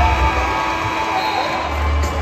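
Arena PA music with a heavy bass beat over the murmur of a basketball crowd and scattered voices; the bass thins out for a moment in the middle and comes back near the end.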